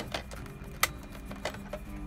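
Plastic clicks from a Kenwood car stereo's detachable faceplate being released with its button and pulled off: a few light clicks, the sharpest a little under a second in, over a faint low steady hum.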